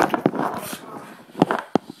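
Handling noise from a camera being moved and set down on a tiled tabletop: several sharp knocks with rubbing and scraping in between.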